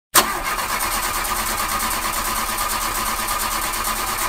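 A car's starter motor cranking the engine with a fast, even pulsing, the engine not catching: a car that won't start.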